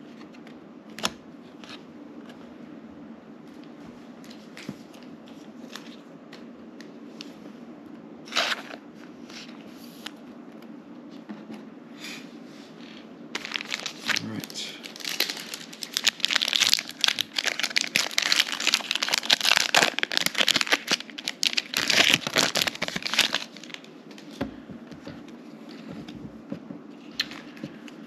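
A 2023 Panini Prestige football card pack's wrapper being torn open, crinkling densely for about ten seconds from about halfway in, after a few scattered taps of cards being handled. A steady low hum runs underneath.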